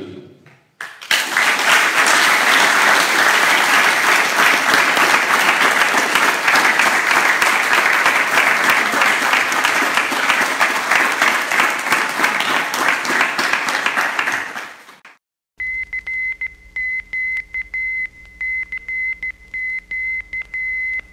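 Audience applause that lasts about fourteen seconds and fades out. After a short gap, a single high beeping tone is keyed on and off in a Morse-code rhythm.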